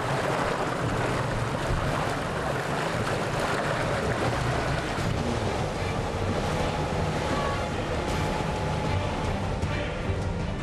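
Steady wind and sea noise, waves washing around small sailing dinghies, with faint music underneath.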